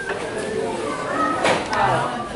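Indistinct chatter of adults and children echoing in a large indoor hall, with one brief knock about one and a half seconds in.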